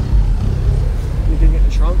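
A loud, steady low rumble with voices over it, and a man's voice near the end.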